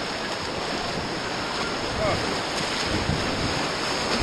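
Whitewater rapids rushing steadily around an inflatable raft as it drops down a steep chute of churning water.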